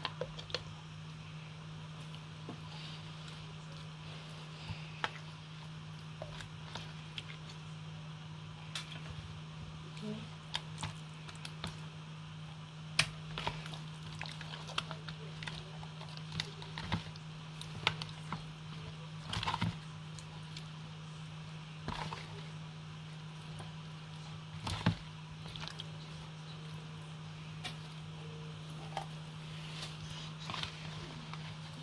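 Pieces of marinated fish being handled and set down on a metal baking tray: scattered short taps and soft wet knocks, a few louder ones, over a steady low hum.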